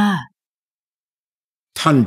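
Only speech: a narrator's voice draws out the end of a word, then falls completely silent for about a second and a half before speaking again near the end.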